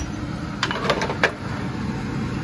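A metal baking tray being set down on a gas stovetop's grates: a click, then three short clanks within about a second, over a steady low hum.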